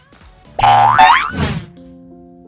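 A loud comic cartoon sound effect with sliding pitch, lasting about a second and starting about half a second in, laid over soft background music. After it, the music carries on quietly with long held notes.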